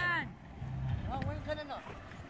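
Faint, distant voices of people talking over a low steady outdoor rumble; a louder spoken word ends right at the start.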